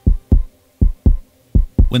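Heartbeat sound effect: three double thumps (lub-dub), about 0.7 s apart. It is a quickened heartbeat that stands for the raised heart rate of the stress response.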